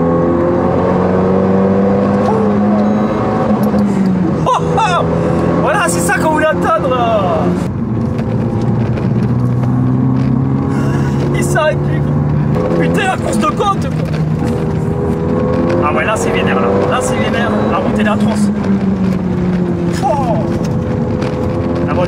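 Renault Mégane 3 RS Trophy's 2.0-litre turbo four-cylinder engine heard from inside the cabin under hard driving. Its note climbs under acceleration and falls back several times, with voices talking and laughing over it.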